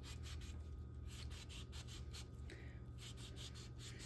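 A sharp paring knife cutting the peel and white pith off a navel orange: many faint short cutting strokes in quick succession over a low steady hum.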